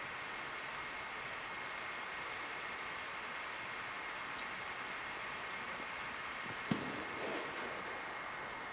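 Steady hiss with a faint, steady high-pitched whine running under it. About three-quarters of the way through comes a sharp click, followed by a second of rustling.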